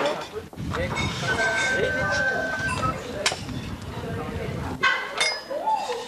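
Teenagers chattering over a meal, with a few sharp clinks of serving spoons and dishes, the clearest a little past three seconds in. A low rumble runs under the chatter from about half a second in until nearly five seconds.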